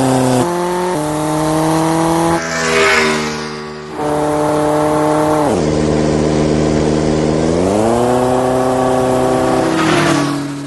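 Motorcycle engine sound effect revving up through a few gear changes, its pitch climbing in steps, with a short rushing hiss about three seconds in. The engine pitch drops sharply about halfway through, then rises again near the end.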